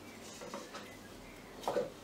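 Faint handling sounds, a few light ticks and rustles, as jute rope is twisted by hand around a wooden stick. A single spoken word comes near the end.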